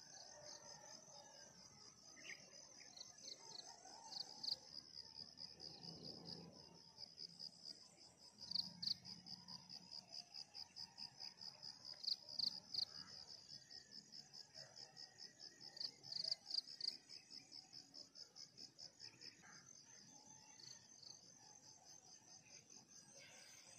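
Crickets chirping: a faint, steady, high-pitched pulsing trill of several chirps a second, swelling louder now and then.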